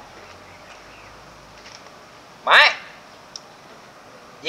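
One short, nasal vocal sound from a person, like a grunt or a clipped word, about halfway through, its pitch rising and then falling. It sits over a faint, steady background.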